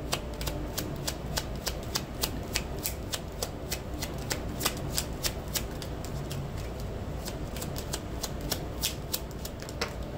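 A deck of tarot-style reading cards being shuffled by hand: a steady run of light, quick card clicks and flicks, several a second.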